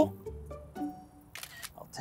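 Background music with sustained low notes, and a phone camera's shutter click about one and a half seconds in.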